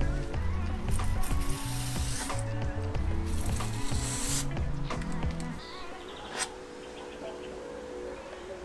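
Aerosol spray paint can spraying in two hisses of about a second each, over background music with a bass line that drops away about halfway through. A short sharp click follows near the end.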